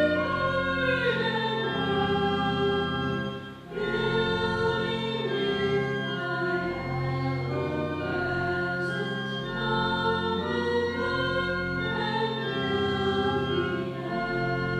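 A hymn sung with organ accompaniment: voices carry a slow melody over sustained organ notes, with a short breath between phrases about four seconds in.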